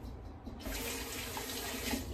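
Kitchen tap running briefly, a steady rush of water that starts about half a second in and stops near the end.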